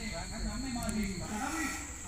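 Low, indistinct voices talking, with crickets chirring steadily behind.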